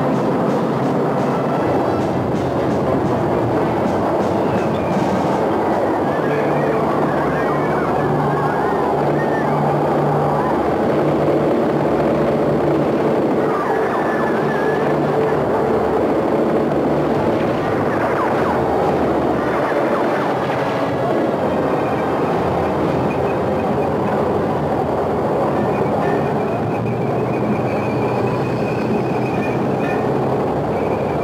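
Steady rumble and clatter of a heavy vehicle on a war-film soundtrack, with shouted voices now and then in the middle part.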